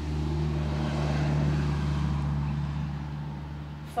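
A car driving past, its engine and road noise swelling to the loudest about a second and a half in and fading away, over a steady low hum.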